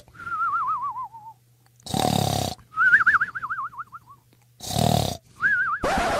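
Cartoon snoring sound effect: rough snores alternating with a high, warbling whistle that wobbles and falls in pitch, three whistles in all.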